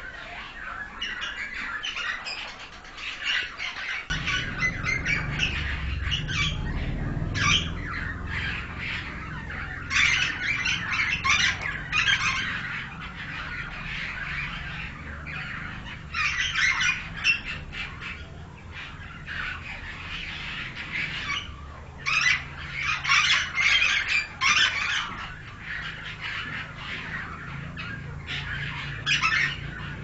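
Caged pied mynas calling in repeated bouts of harsh squawks and chatter, several seconds apart, with a low steady rumble underneath from about four seconds in.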